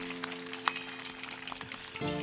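Live band music: a held chord rings out with scattered sharp clicks over it, the loudest about two-thirds of a second in. The chord fades near the end and a new one strikes at the very end.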